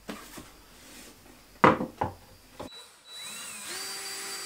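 A few sharp knocks as the plastic disconnect box is handled against the wall. About three seconds in, a cordless drill spins up with a rising whine, then runs steadily, driving a screw through the box into the fiber-cement backer board.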